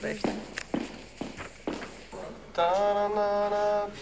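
Footsteps, hard heels clicking on a floor about twice a second, followed about two and a half seconds in by a voice holding one long steady note.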